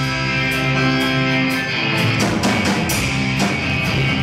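Live garage-rock band playing: distorted electric guitars, keyboard and drum kit. A held chord rings for about the first two seconds, then the drums and strummed guitars come back in.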